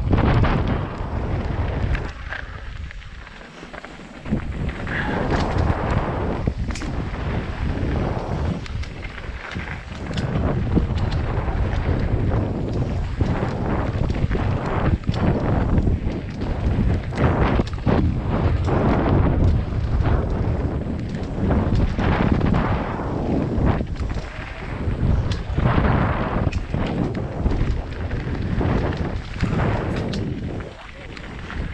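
Mountain bike descending a dirt and gravel trail, heard through a helmet-mounted action camera's microphone: wind buffeting the mic over tyre noise on loose gravel, with frequent knocks and rattles as the bike jolts over bumps. It eases off for a couple of seconds near the start.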